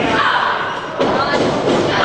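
A single thud in a wrestling ring about a second in, against shouting voices in a large hall.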